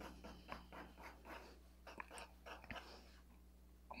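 Soft 6B graphite pencil shading on paper: faint, short, irregular scratching strokes that die away near the end.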